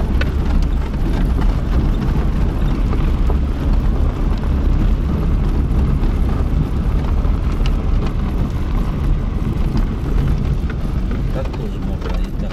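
Car driving over a rough dirt road, heard from inside the cabin: a steady low rumble of engine and tyres, with a few faint clicks.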